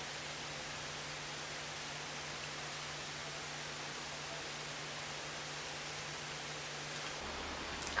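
Steady hiss of a quiet room through the microphone, with a faint low hum that stops shortly before the end.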